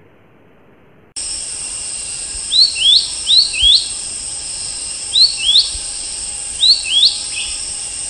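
Nature ambience starting suddenly about a second in: a steady high-pitched cricket trill with short rising bird chirps, heard in four quick pairs.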